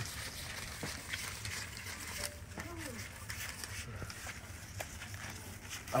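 Quiet background with scattered faint clicks and rustles as a plastic 16 mm film reel is handled, and a brief faint voice-like sound about halfway through.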